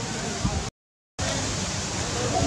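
Steady outdoor background hiss with no distinct calls, cut off by half a second of dead silence at an edit a little under a second in, then resuming.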